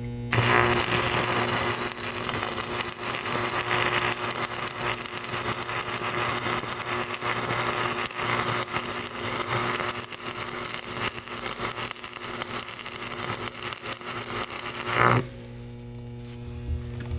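Stick (arc) welder's electrode arc crackling and sizzling steadily as a bead is run along steel angle iron; it starts about a third of a second in and cuts off suddenly about a second before the end as the arc is broken.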